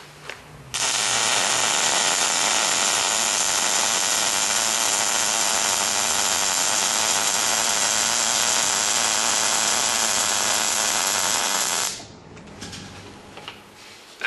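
MIG welding arc with the wire feed turned up to 300, too fast for the voltage: a steady sizzle that starts about a second in and cuts off sharply near the end. Despite the sizzle, the wire is feeding erratically and the puddle is building up faster than the wire can melt.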